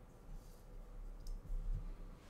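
Faint room noise with a few soft clicks and a couple of low thumps near the end.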